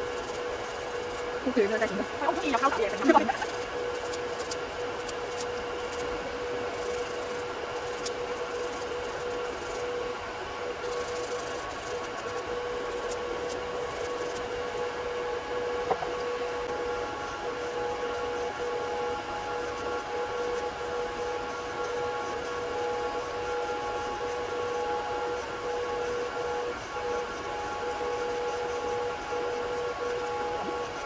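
Steady hum of a desktop nail dust collector fan running under the customer's hands, with a second, higher tone joining about halfway through. A brief voice is heard about two seconds in.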